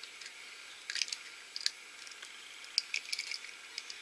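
A Hatchimals CollEGGtibles toy egg shell being cracked and pulled apart by fingers: faint scattered clicks and crackles of the thin shell breaking.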